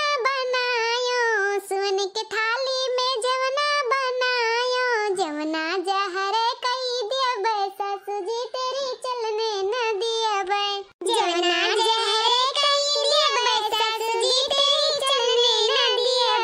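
A high-pitched voice singing a melodic song, with long notes that glide up and down. There is a brief break about eleven seconds in.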